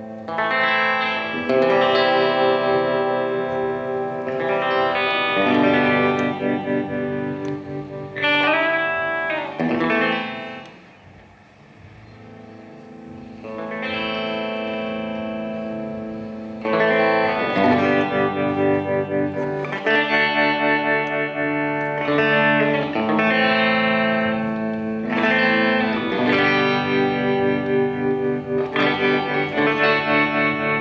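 Electric guitar chords played through a Soviet 'Vibrato' foot pedal, the treadle setting the depth of a vibrato-tremolo wobble. The pitch wavers briefly about nine seconds in. The sound dips quieter for a few seconds, then pulses rhythmically in volume through the second half.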